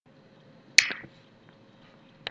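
A single sharp click a little under a second in, dying away quickly, over faint microphone hiss.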